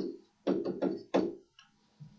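A pen stylus tapping and knocking on a writing screen during handwriting: a run of sharp taps, about two a second, each with a short ring after it, stopping near the end.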